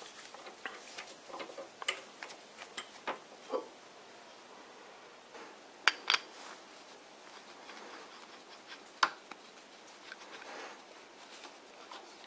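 Small metal clicks and clinks as a steel MT3 arbor is handled and its freshly cut thread is screwed into a threaded Röhm drill chuck, with a few sharper clinks about six and nine seconds in.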